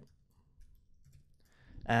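Faint computer keyboard typing: a few light, scattered key clicks.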